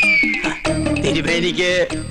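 Comic film background music: a held high note that slides downward, then a wavering, pitched, cry-like sound.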